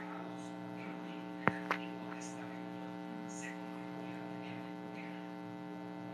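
Steady electrical hum, heard as a stack of even tones, with two short taps about one and a half seconds in, the first louder.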